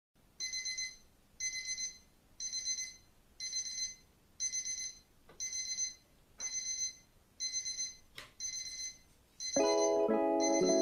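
An electronic alarm or ringtone-style beeper sounding in regular pulses, about one a second, each pulse a quick high-pitched trill. Music starts just before the end.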